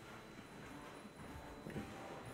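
A few faint footsteps on a wooden floor, the clearest near the end.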